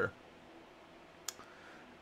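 Near silence with faint room tone, broken by a single short, sharp click about a second and a quarter in.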